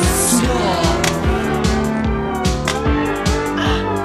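Instrumental passage of a synth-pop song played live: an electronic drum-machine beat with a steady, even kick, under synthesizer lines that hold notes and glide in pitch.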